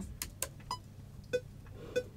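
Metronome click track from the studio's recording software, short pitched blips about two-thirds of a second apart, the first higher than the rest: the count-in before a vocal take.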